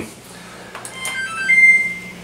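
Edgestar WDC1550W washer-dryer combo's control panel playing its electronic power-on tune as the display lights up: a few short beeps at different pitches about a second in, ending in a longer beep.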